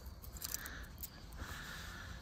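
Faint scraping and a few small clicks of a hand poking through crumbly debris at the bottom of a refractory-lined furnace chamber, over a low steady rumble.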